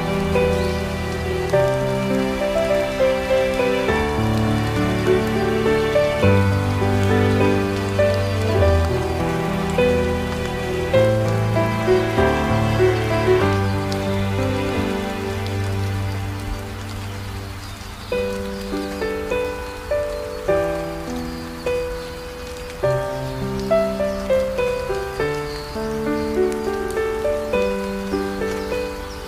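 Slow, soft instrumental music, a melody of notes that start sharply and fade over long held low notes, mixed with a steady hiss of falling rain.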